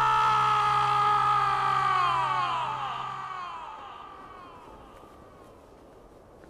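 A man's long anguished cry of "Your Majesty!" (陛下): one held wail that slowly falls in pitch and fades away over about four seconds, over low sustained background music that ends partway through.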